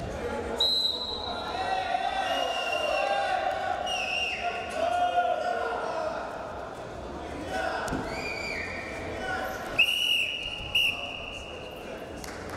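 Men shouting over a freestyle wrestling bout in a large hall, with dull thuds of the wrestlers on the mat. About ten seconds in, a referee's whistle blows for about two seconds with two short breaks, stopping the action.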